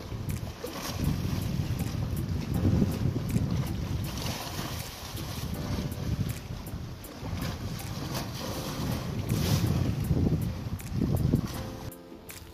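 Wind buffeting the microphone in uneven gusts, with sea water washing against the rocks.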